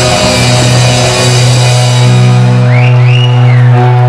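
Live rock band with drum kit and distorted guitar ending a song. The drums and cymbals fade out after about a second and a half, leaving a low chord ringing on, with a few short rising squeals about three seconds in.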